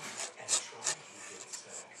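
Four or five short scraping rubs against a window, close to the microphone.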